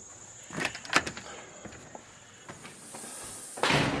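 Pella glass patio door being opened and shut: a few latch and handle clicks in the first second, then a louder swish and bump near the end as it closes.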